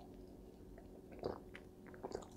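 Faint sounds of a man sipping and swallowing beer from a glass: a few soft mouth clicks, about a second in and near the end, over quiet room tone.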